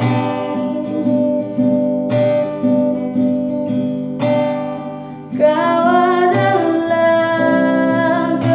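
Acoustic guitar strummed in a slow song with a solo singing voice. Mostly guitar chords in the first half, fading a little, then the singing comes back strongly over the strumming about five and a half seconds in.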